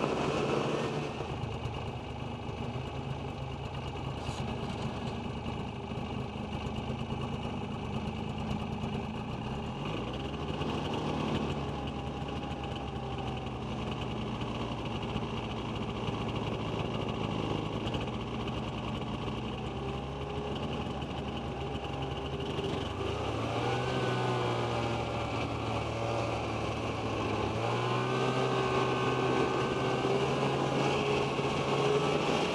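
Snowmobile engine running under way, heard from the rider's seat. Its pitch shifts several times with the throttle and rises over the last few seconds.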